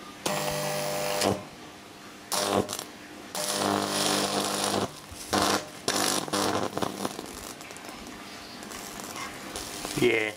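High-voltage arc from an unballasted microwave oven transformer striking a screwdriver, buzzing in repeated bursts of up to about a second and a half over the first seven seconds. A softer steady crackle follows while the screwdriver's tip burns.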